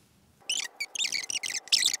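Rapid, very high-pitched squeaky chatter starting about half a second in, like a woman's voice sped up in fast-forward to a chipmunk pitch.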